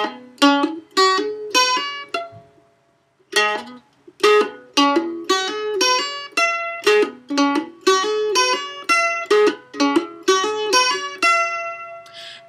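Mandolin playing a scale, each picked note followed by a fingertip hammer-on so that two notes sound from one pluck. There is a short run, a brief pause about two seconds in, then a longer run of notes.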